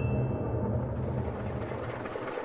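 Scene-change music fading out as a motor car engine sound effect comes in with a steady low running rumble. A thin high steady tone enters about a second in.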